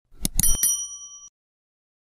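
Subscribe-button sound effect: a few quick clicks, then a bright bell ding that rings briefly and cuts off just over a second in.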